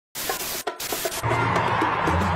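Television static hiss with a short break partway through, then music with a steady strong bass comes in a little over a second in.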